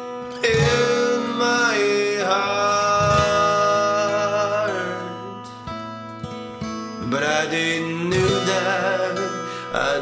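Acoustic guitar song with a voice singing long held notes, in two phrases with a brief dip between them.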